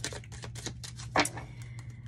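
Tarot cards being shuffled by hand: a quick, even run of light clicks, about seven a second, that stops about a second in, followed by a single louder rustle.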